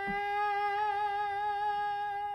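A man singing one long, steady, high held note, imitating the film score of the scene being described.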